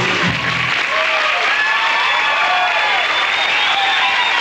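Studio audience applauding and cheering, with many short high whoops and shouts, as a rock band's song ends; the band's last notes stop about three-quarters of a second in.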